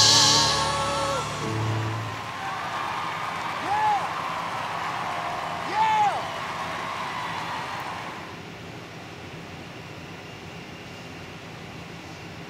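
Boys' close vocal harmony over backing music holding its final chord with vibrato, cutting off about a second in. A studio audience then cheers and applauds, with a couple of short whoops, dying away after about eight seconds to quiet room tone.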